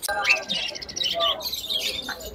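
Caged budgerigars chirping and chattering in a quick run of short, high chirps.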